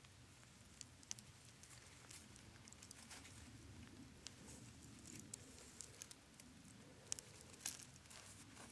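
Near silence, with faint scattered clicks and crumbling as bare hands pick through loose soil and small rock fragments, a couple of slightly sharper clicks near the end.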